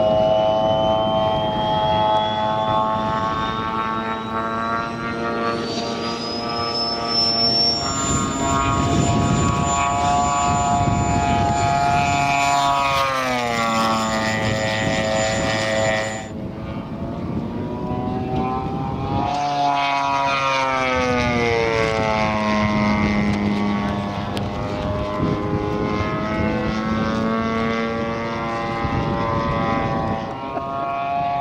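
3W 70cc two-stroke petrol engine of a 1/5 scale model SBD Dauntless in flight, driving the propeller steadily. Its pitch sinks a little before halfway through and climbs again a few seconds later as the plane passes and the throttle changes.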